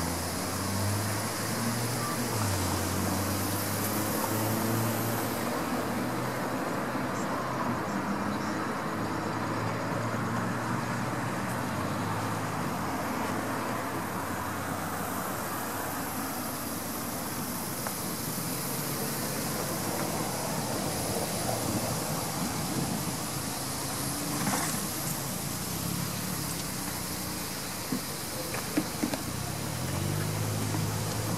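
Steady vehicle noise: car engines running and road traffic, with a low hum throughout. A few short sharp knocks near the end.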